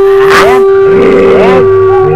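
A long howl held on one steady note, with a man's wavering, moaning voice over it; the howl stops at the end.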